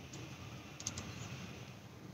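Faint taps of typing on a smartphone's touchscreen keyboard, a few quick clicks together a little under a second in.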